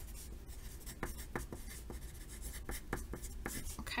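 Yellow wooden pencil writing on a sheet of paper, a run of short, irregular scratching strokes as a few words are written out in longhand.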